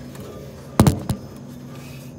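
A loud, sharp knock about a second in, followed quickly by a lighter one, over a steady low hum.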